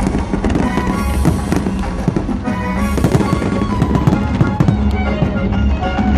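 Aerial fireworks bursting and crackling in rapid succession, over loud music.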